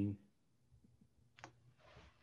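A single faint, sharp computer mouse click about a second and a half in as a screen share is started, followed by a soft brief rustle near the end, over quiet room tone.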